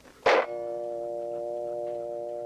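A single sharp click on a telephone line, then a steady telephone dial tone in the handset: the call has been hung up at the other end.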